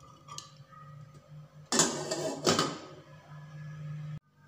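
A glass pot lid being handled and set onto a metal cooking pot, with two short clattering knocks a little under a second apart, about two seconds in. A faint steady low hum runs underneath.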